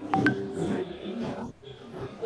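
Indistinct murmur of several voices in a hall, with a short electronic beep of two quick tones just after the start.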